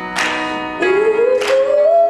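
Live song: chords on an electronic keyboard struck twice, with a singer's voice entering about a second in on one long note that rises slightly and then holds.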